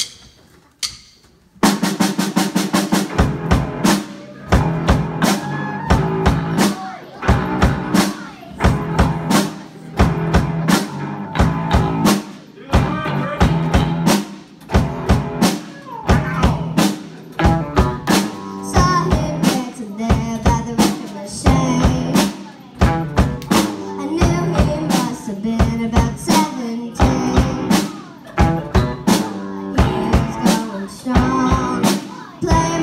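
A live rock band of drum kit, electric bass and electric guitar starts together about a second and a half in and plays a steady-beat rock song, with a child singing into a microphone.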